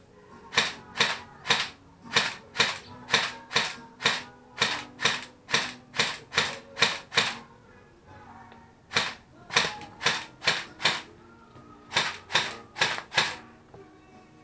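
Airsoft rifle firing single shots in quick succession, a sharp pop about twice a second: a run of about sixteen, a short pause, five more, another pause, then four more near the end.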